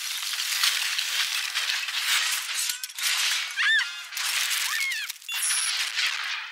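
Film sound effects of a jet of spraying water and freezing ice: a dense hissing, crackling noise, thin with no low end, with a few short squealing pitch glides about halfway through.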